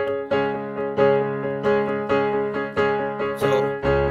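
Digital piano playing repeated block chords, each struck and let ring, in a 3+3+2 rhythmic phrasing. A deep bass note comes in just before the end.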